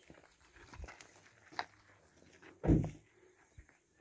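Faint footsteps on a gravel road, with one short, louder low sound about three-quarters of the way through.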